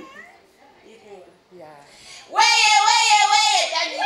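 A woman's high-pitched voice held long and loud into a microphone, starting about two seconds in, with a slightly wavering pitch. Only faint voices come before it.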